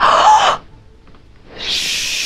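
A short breathy burst at the start, then from about a second and a half in a woman's long, loud shushing hiss ("shhh") that carries on past the end.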